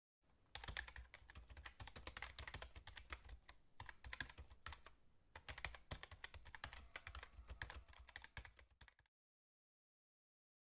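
Faint, rapid, irregular light clicking in runs with short breaks, stopping about nine seconds in.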